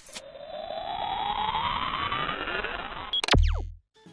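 Electronic intro sound effect: a band of synthesized tones sweeping apart, some rising and some falling, for about three seconds. It ends in a short, loud, deep bass hit with a falling zap and then cuts off suddenly.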